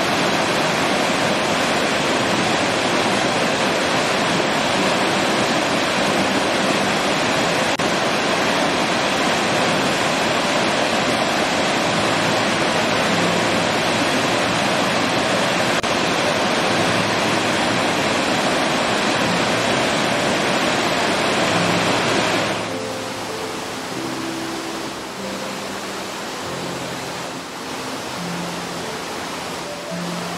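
Chittenango Falls, a waterfall dropping over a series of cascading rock steps, giving a steady, dense rush of falling water. About 22 seconds in, the rush cuts sharply to a quieter water sound with soft background music notes over it.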